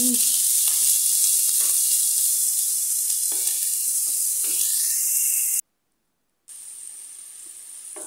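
Chopped onions sizzling in hot cooking oil in a nonstick frying pan, stirred with a wooden spoon. The sizzle cuts out completely for about a second past the middle, then comes back quieter.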